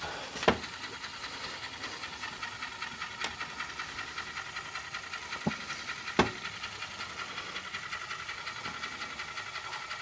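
Steady hiss with a fast fine ripple from the Technics RS-TR210 cassette deck setup, and four sharp clicks as the deck is handled and its front-panel buttons pressed, the loudest about six seconds in.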